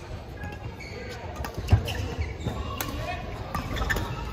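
Badminton rally: sharp racket strikes on the shuttlecock, the loudest just under two seconds in, among thuds of the players' footwork on the court floor.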